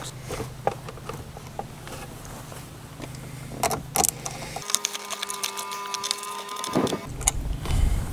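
Small ratchet and socket clicking as the positive terminal clamp is tightened onto a car battery post, in scattered bursts of ticks. A steady hum lasting about two seconds sits a little past the middle.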